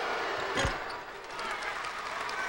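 A single basketball thump about two-thirds of a second in, during a free-throw attempt, over the steady noise of the arena crowd.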